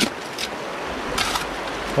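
Shallow creek water running steadily over rocks, with a short scrape of a digging tool in creek-bank gravel a little over a second in.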